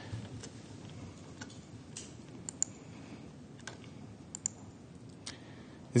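Faint, irregular clicks from a laptop at a lectern, about a dozen short clicks scattered over low, steady room noise.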